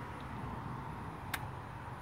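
Low, steady outdoor background rumble with a single short, sharp click about a second and a half in.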